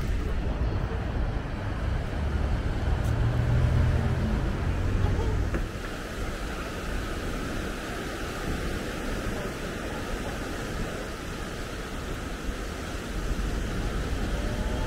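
City street traffic noise, with the low engine rumble of a nearby vehicle loudest a few seconds in and dropping away suddenly before the halfway point.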